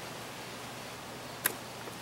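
A single sharp click about one and a half seconds in, as the plastic wiring connector for the door panel's light is unhooked, over a steady background hiss.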